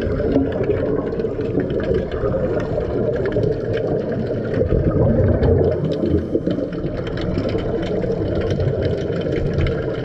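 Underwater sound picked up by a diver's camera: a steady muffled rumble with scattered faint clicks. It swells briefly about five seconds in.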